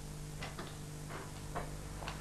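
A few light, irregular taps over a steady electrical mains hum.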